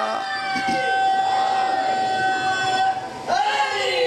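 A steady high ringing tone, dead flat in pitch like public-address feedback, held for about three seconds and cut off suddenly; voices call out just after.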